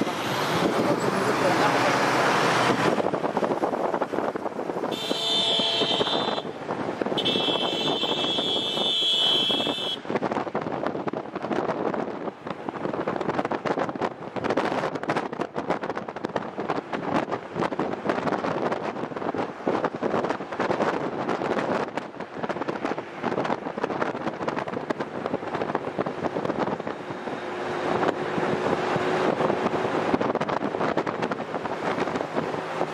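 Road traffic noise with voices in the background. A high, steady horn-like tone sounds briefly about five seconds in, then again for about three seconds from seven seconds in.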